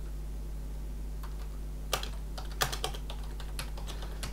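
Typing on a computer keyboard: a short run of key clicks that starts about a second in and comes thickest in the second half, over a steady low hum.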